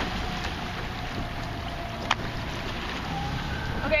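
Small boat's motor running steadily on the water with wind on the microphone, a faint droning tone held under the noise, and one sharp click about two seconds in.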